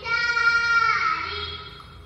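High-pitched cartoon-character voice singing one long held note that slides downward about a second in and then trails off, played from the soundtrack of an animated children's story.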